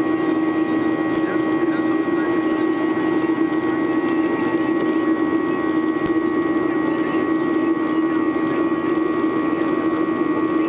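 Boeing 737's CFM56 turbofan engines heard from inside the passenger cabin during the climb after takeoff. A steady drone with a low hum and fainter higher whines, unchanging throughout.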